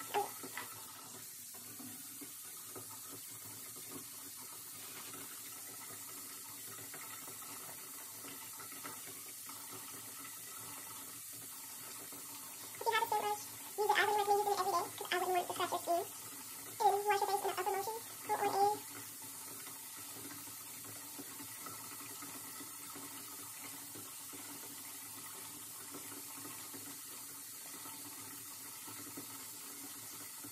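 Water running steadily from a sink tap during face washing. About halfway through, a voice sounds for several seconds in a few held notes.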